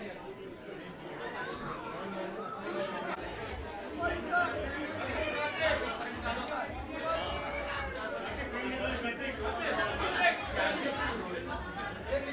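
Overlapping chatter of many voices talking at once, with no distinct sound other than speech.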